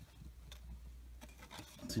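Faint handling of baseball cards in clear plastic sleeves: light rubbing and a few small ticks over a low steady hum. A man's voice comes in near the end.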